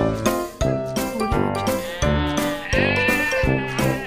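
Background music with a steady beat, with a goat bleating once in a wavering call about halfway through.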